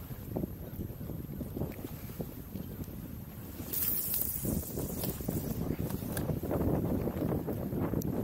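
Wind buffeting the microphone over water lapping against an inflatable boat's hull, with a brief high hiss about four seconds in as a fishing rod is cast.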